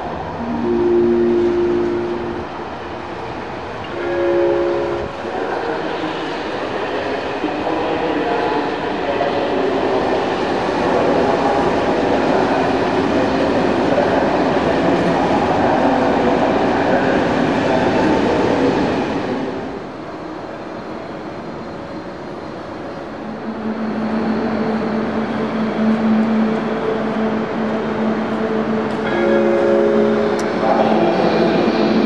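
A train horn gives two short blasts near the start. A train then passes with loud, steady rolling rail noise that cuts off a little past the middle. A steady low hum follows, and another horn blast comes near the end.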